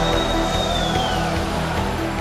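Background music with a steady bass line and a high held tone that slides down about a second in.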